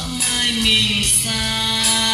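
A song with singing played back from tape on a Pioneer RT-1011H reel-to-reel deck: a held, gliding melody note over steady accompaniment, with regular high percussion strikes.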